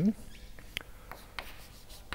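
Chalk on a blackboard: a few faint, short taps and scrapes as a structure is drawn.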